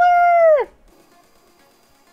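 A woman's voice holding a high, drawn-out note at the end of an excited exclamation for about half a second, falling in pitch as it stops. Then only a faint background remains.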